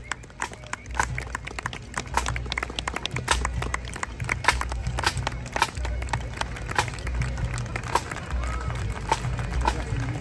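Pipe band drum corps playing a march beat: crisp snare drum strokes over regular bass drum thuds, with no bagpipes sounding.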